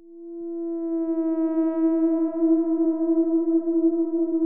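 A single sustained electronic drone on one steady pitch, swelling in over about the first second and then holding with a slight waver.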